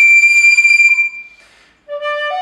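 Mollenhauer Modern Soprano recorder holding one very high note for about a second and a half, which then dies away into a short silence; a much lower note begins right at the end.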